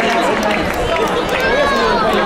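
A crowd of many people talking at once: overlapping voices in steady chatter.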